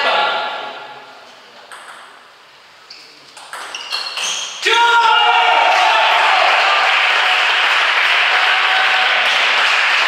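Table tennis ball clicking off bats and table in a short rally, then a sudden burst of shouting and cheering from players and spectators about halfway through that keeps going.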